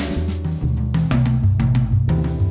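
Roland V-Drums electronic drum kit played in a jazz-style groove, its sampled kick, snare and cymbal sounds struck in quick succession over accompanying music with a moving bass line.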